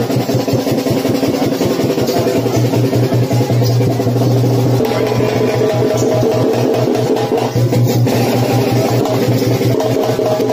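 Fast, continuous drumming of a karakattam folk-dance accompaniment, dense rapid strokes with held melody notes sounding over them.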